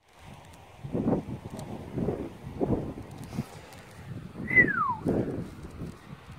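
A run of dull thumps roughly once a second, as of a digging tool working soil at a freshly dug hole. About four and a half seconds in, a single high call falls steeply in pitch.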